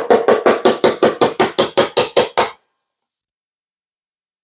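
A plastic squeeze bottle of ranch dressing being shaken hard, its thick contents sloshing in a quick, even run of about fifteen shakes at about five a second, stopping abruptly under three seconds in.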